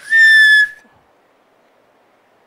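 A single short note blown on a bansuri (Indian transverse flute), breathy at the start, held for under a second, its pitch falling slightly as it ends.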